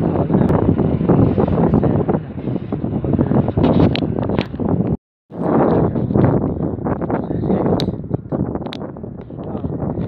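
Wind buffeting a phone's microphone outdoors: a loud, uneven rushing that rises and falls, broken by a brief total dropout of sound a little past halfway.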